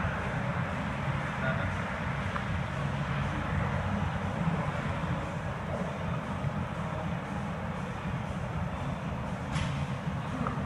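Steady background rumble and hiss of a large gym hall, even throughout, with one short tick near the end.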